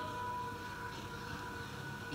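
A pause in a talk: low steady background hiss with a few faint steady tones, the room tone and noise of an old recording.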